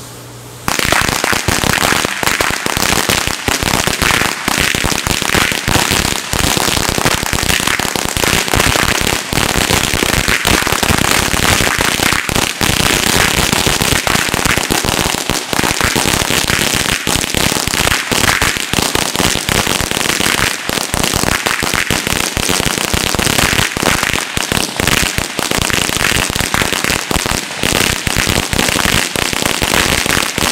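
A long string of firecrackers on a lawn going off in a rapid, unbroken rattle of small bangs. It starts suddenly about half a second in and is loud throughout.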